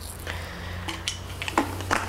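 Plastic trigger-spray head being fitted and screwed onto a plastic spray bottle: a few scattered light clicks and rattles over a low steady hum.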